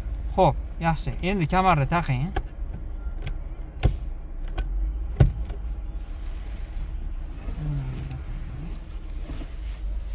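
A car engine idling, heard from inside the cabin as a steady low rumble. Three sharp clicks come between about two and five seconds in, the last the loudest, as the handbrake lever is released.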